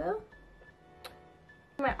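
A woman's voice trailing off, then a quiet pause with one sharp click about halfway and a faint thin high tone, before her voice starts again near the end.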